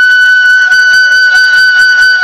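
Music: a wind instrument holding one long, steady high note.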